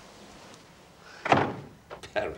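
A door banging shut, one loud sudden knock about a second and a half in after a quiet stretch, followed by a faint click.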